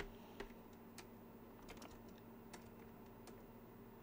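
Faint keystrokes on a computer keyboard: a handful of separate clicks at uneven intervals, over a low steady hum.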